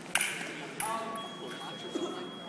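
Foil blades strike together twice in a fast exchange, sharp metallic clicks in the first second, with a shout among them. Then the electric scoring box sounds a steady high beep from just over a second in, registering a touch.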